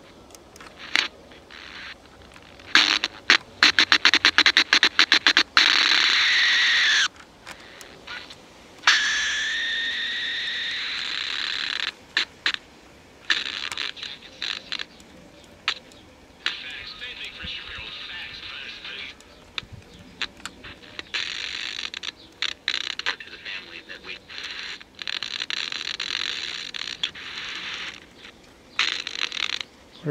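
Vega RP-240 Soviet portable radio playing through its own small speaker as the dial is tuned across the band: bursts of static and crackle, broken snatches of broadcast speech and music, and whistles that slide in pitch between stations.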